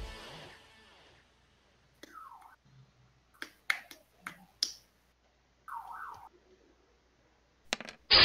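A quiet stretch with a few sharp computer mouse clicks, three or four close together mid-way and two more near the end, as a player works the virtual tabletop. Two brief faint gliding sounds come in between, and background guitar music fades out in the first second.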